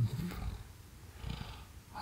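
A pause in a man's speech: the tail of a drawn-out word right at the start, then low room rumble and a faint breath about a second and a half in, before he speaks again.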